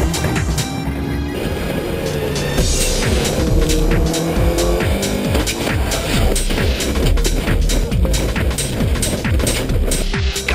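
Background music with a steady beat, over a race car's engine running underneath, its pitch rising and falling.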